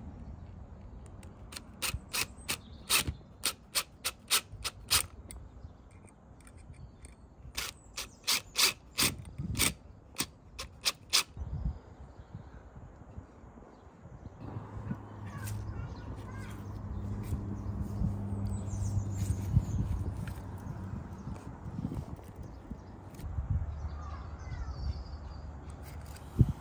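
DeWalt DCF887 cordless impact driver driving screws through a metal light bracket, in two runs of short, sharp bursts. A steadier low hum follows over the second half.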